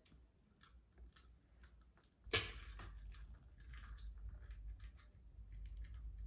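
Faint handling sounds at a stand mixer's steel bowl: scattered light clicks, then a sharp knock about two seconds in, followed by low rumbling and rustling.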